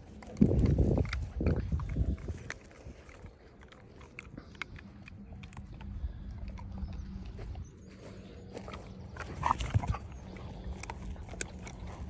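Hungarian Vizsla dogs sniffing and rooting with their noses in grass close to the microphone, with scattered sharp clicks. A loud low rumbling comes in the first two seconds and a louder patch near the end.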